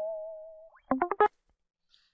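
A sampled electric guitar note (Prominy SC virtual guitar, no distortion yet) rings out with a slight waver and fades away. About a second in, the library's fret-noise sample plays: a hand rubbing across the strings, a brief, very quiet cluster of scrapes and squeaks lasting under half a second.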